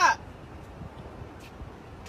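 Faint, muffled knocking from inside a closed, insulated cargo van, barely audible from outside over low background noise.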